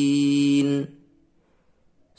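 A man's voice reciting the Quran in slow tartil style, holding the final drawn-out syllable of a verse at one steady pitch, which stops abruptly just under a second in. Near silence follows.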